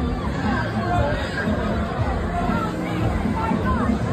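Funfair crowd chatter over loud fairground music, a steady mix of many voices and a pulsing low beat.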